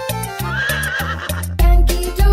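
Upbeat children's music with a cartoon horse whinny sound effect, a wavering high call lasting under a second that begins about half a second in. Near the end a heavy bass beat comes in.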